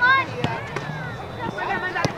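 Shouting voices from the sideline of an outdoor soccer game over a low murmur of crowd noise, with two sharp knocks, one about half a second in and one at the end.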